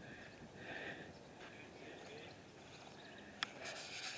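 Faint footsteps through grass over a quiet outdoor background, with a single sharp click near the end.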